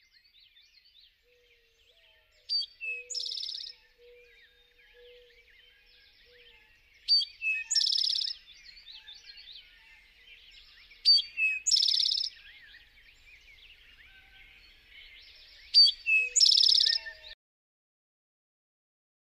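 Birdsong: one bird repeats a short phrase four times, about every four seconds, each a sharp high note followed by a buzzy trill, over a faint chorus of other birds' chirps. It cuts off suddenly near the end.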